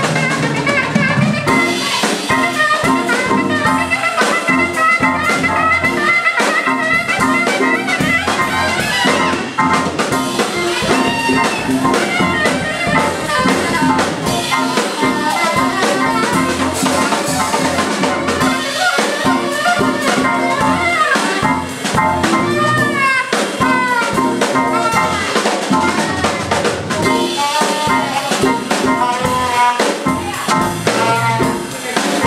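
Live jazz band playing: a saxophone carries a melody line, with bends and quick runs, over a drum kit.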